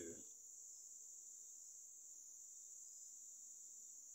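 Near silence: faint background with a steady, thin high-pitched hiss or whine.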